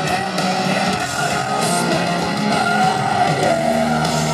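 Live rock band playing loud, with distorted electric guitars to the fore, recorded from the audience.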